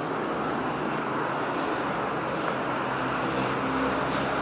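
Steady vehicle noise outdoors: an even rush with a faint low hum underneath, holding level throughout.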